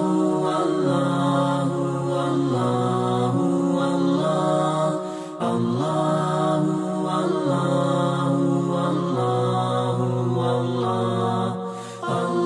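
A man's voice chanting in Arabic as intro music, holding long notes that step up and down in pitch, in two long phrases with a short break about five seconds in and again near the end.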